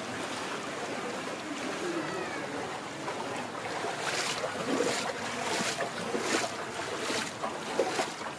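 Floodwater rushing through a narrow walled drain channel, a steady wash of water noise, with repeated short splashes in the second half.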